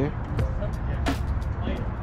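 Background music over a steady low rumble, with a couple of sharp knocks.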